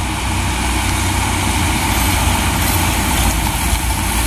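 Mitsubishi Canter HD 125 PS light truck's four-cylinder diesel engine running steadily as the truck approaches, growing slightly louder.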